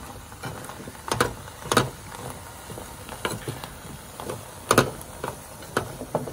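Edamame pods stir-fried in a small camping pan on a gas camp stove, turned with chopsticks: irregular clacks of chopsticks and pods against the pan over a steady hiss. The loudest clacks come about a second in, just before two seconds and just before five seconds.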